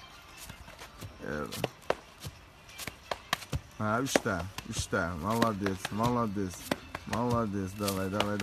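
Sharp, irregular slaps of gloved hands striking a concrete path during explosive push-ups, several a second. From about four seconds in, a man's voice urges him on with long drawn-out calls.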